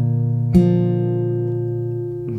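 Acoustic guitar with a capo at the third fret, fingerpicked on a G-shape chord. The chord rings on, and a new note is plucked about half a second in and slowly fades.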